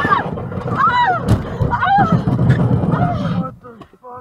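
Car crash heard from inside the car on a dashcam: loud rumbling and scraping noise just after the impact, with several wavering high-pitched cries or squeals about a second apart, dying away about three and a half seconds in.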